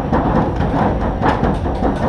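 Workshop clatter of mechanics working on a rally car: short knocks and clicks of tools and parts over a steady low rumble.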